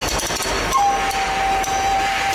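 Loud, noisy ambience of a large event hall with scattered clicks and knocks. A little under a second in, a steady high tone starts and holds.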